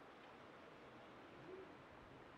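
Near silence: faint background hiss, with one brief, faint low tone about one and a half seconds in.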